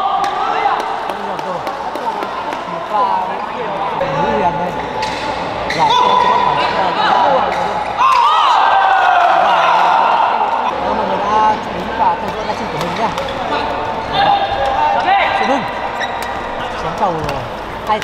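Badminton doubles rally in a large, echoing sports hall: sharp racket hits on the shuttlecock and players' quick footwork on the court, over a steady bed of voices.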